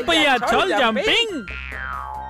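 Animated cartoon characters' voices exclaiming with sharply swooping pitch for about a second and a half, then a falling whistle sound effect as the clowns drop back to the ground.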